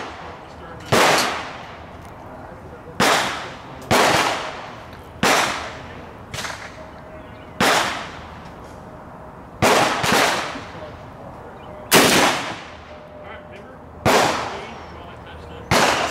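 Rifle shots on an outdoor firing range, about nine sharp cracks at irregular gaps, each followed by a short echo. Some come less than a second apart, too fast for one bolt-action rifle, so several rifles are firing. The loudest comes about twelve seconds in.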